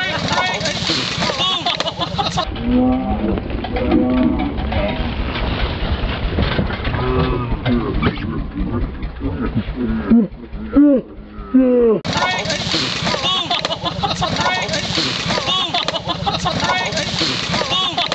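A small four-wheeler's engine running with a steady low hum under raised voices, with several long, bending calls about ten seconds in.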